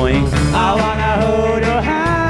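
Sixties-style rock band playing live: a male lead voice sings held, gliding notes over electric guitars and drums.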